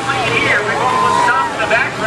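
Race announcer talking over the speedway's public-address loudspeakers, with one drawn-out syllable near the middle and a steady low engine hum beneath.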